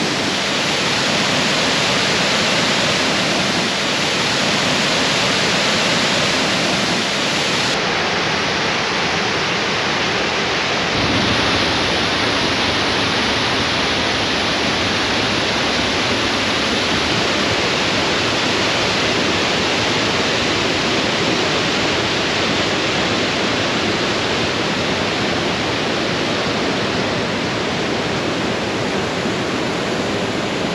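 Steady rush of white water from Sol Duc Falls and the Sol Duc River pouring over rocks. Its tone shifts a little about eight and again about eleven seconds in.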